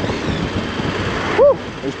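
Steady wind rush on the microphone with road noise from a motorcycle cruising at about 55 km/h. The rush drops away about one and a half seconds in, where a brief hummed voice sound cuts in.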